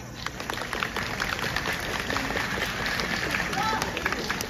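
Audience applauding, a dense patter of hand claps, with scattered cheering voices after the dance music has stopped.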